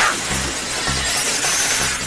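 Steady, harsh metallic scraping hiss of a trolley grinding down a steel cable and throwing sparks, starting suddenly, with music beneath.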